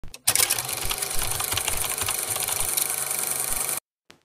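Stylus tip scratching and tapping rapidly on a tablet's glass screen during shading strokes: a dense run of small ticks that stops abruptly near the end.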